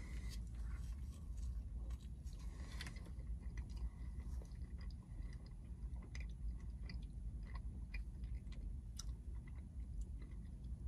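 A man chewing a mouthful of thin-crust pizza, with faint small clicks and crunches scattered through it over a steady low hum.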